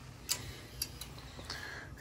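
A few sharp clicks as a hand works the control box of a steam boiler's electronic automatic water feeder. No water runs through the feeder, whose screen is clogged.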